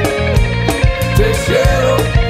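Live Latin rock band playing an instrumental passage: an electric guitar lead with bending notes over bass and a steady drum beat.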